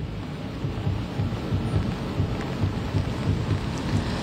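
Steady rain falling on an umbrella held over the microphone, an even noise with a low rumble underneath.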